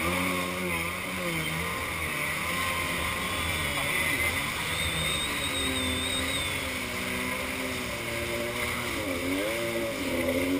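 Kawasaki X2 stand-up jet ski's two-stroke twin engine running at speed, its pitch rising and falling with the throttle, under spray and wind noise. Near the end the pitch dips sharply and climbs again.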